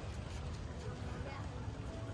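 Outdoor tennis-court ambience: distant voices over a steady low rumble, with a few faint taps from neighbouring courts.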